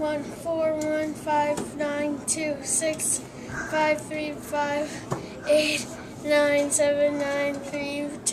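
A young girl singing the digits of pi, one short note per digit on a nearly level pitch.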